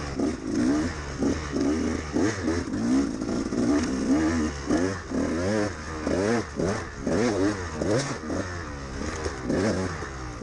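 2013 KTM 200XC-W two-stroke single-cylinder engine under hard riding, its pitch rising and falling over and over as the throttle is opened and closed.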